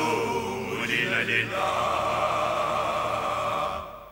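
Male voices singing a slow chant in sustained harmony. The held notes fade out shortly before the end.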